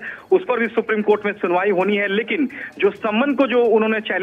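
Speech only: a person talking without a break.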